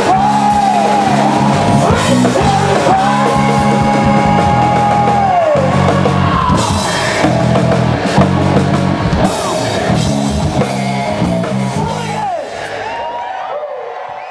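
Live hard-rock band playing: electric guitars, bass and drum kit, with a male singer holding long high notes that bend down at their ends. The band stops near the end and the sound fades away.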